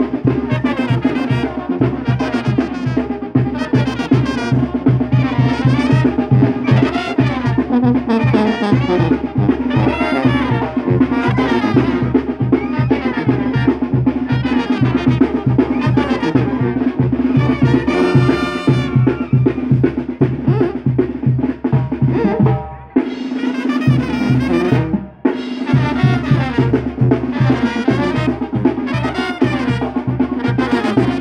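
Brass band with drums playing dance music with a steady beat, pausing briefly twice about three quarters of the way through.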